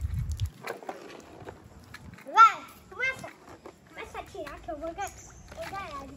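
Young children's voices: short, high-pitched calls and exclamations, the loudest about two and a half seconds in.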